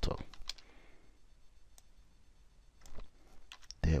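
Computer keyboard and mouse clicking: a few scattered keystrokes and clicks with pauses between them.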